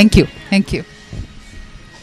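A few short snatches of voice in the first second, then only low background sound.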